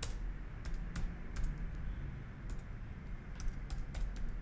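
Typing on a computer keyboard: a series of irregularly spaced keystrokes entering a short control name.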